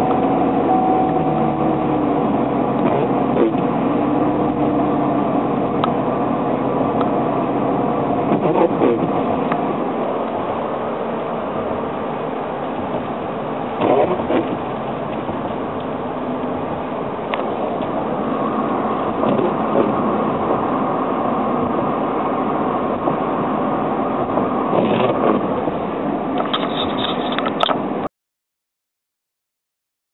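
Steady road and engine noise heard from inside a vehicle's cab while it drives at highway speed.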